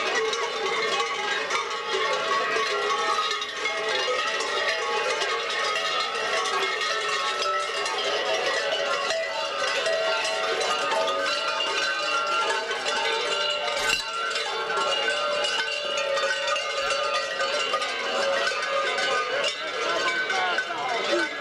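Many large bells worn by babugeri (kukeri) mummers clanging together without a break as the dancers jump and sway, a dense jangling wash of ringing tones.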